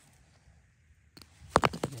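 Hard rock pieces clacking together: a single click a little past a second in, then a quick cluster of sharp, loud knocks just before the end.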